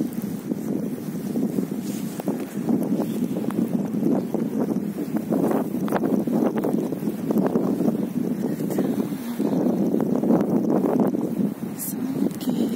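Wind buffeting a phone's microphone, a dense rumbling noise that rises and falls in gusts.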